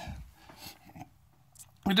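A short pause in a man's talk: faint room tone in a small room with a few soft, faint sounds, and his voice starting again near the end.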